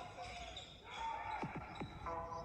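Live gym sound of a basketball game: a basketball bouncing on a hardwood court, three quick bounces in the second half, over crowd and player voices, as the backing music fades out at the start.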